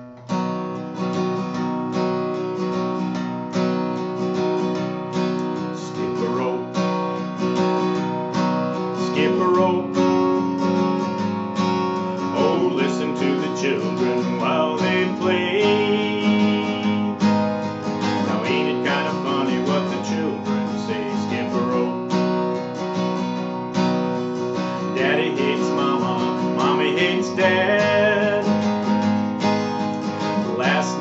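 Martin D-28 acoustic guitar strummed in a steady country rhythm, joined partway through by a man singing.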